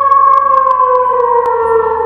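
Eerie background music: a long held synth tone slowly sinking in pitch over a low sustained bass note, which shifts about one and a half seconds in.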